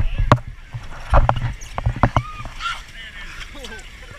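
An inner tube sliding down a wet inflatable vinyl water slide, with thumps and jolts as it bumps along, loudest near the start and about a second in, and a few short squeaks.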